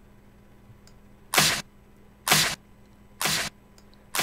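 A drum-machine clap sample played three times, about a second apart, each a short sharp hit, the last one quieter. It runs through a software compressor with a hard knee and its threshold pulled down, so the compression is pretty intense and apparent.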